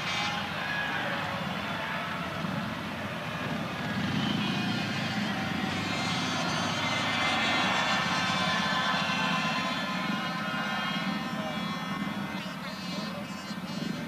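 Several 500 cc single-cylinder speedway motorcycles running at low throttle as the riders coast round after the race, over general crowd noise.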